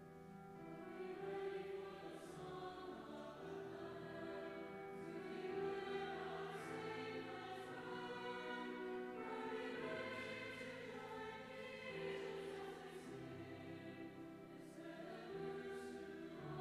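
Mixed choir singing a slow piece in sustained chords that change every few seconds, the words' consonants faintly audible, in a large church.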